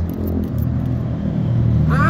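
Steady low engine hum from a running motor vehicle.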